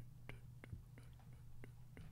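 Near silence: a low steady hum with faint, evenly spaced clicks, about three a second.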